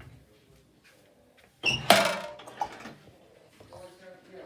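A single loud, sudden crash about one and a half seconds in, dying away within about half a second.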